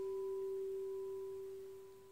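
Frosted quartz crystal singing bowl ringing with one pure steady tone and a faint higher overtone, slowly fading toward the end.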